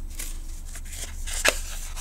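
Paper pages of a hardcover book being handled and turned, a dry rustling with a sharp tap about one and a half seconds in.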